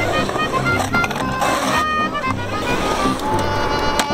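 Background music: a song soundtrack with held notes over a recurring bass line.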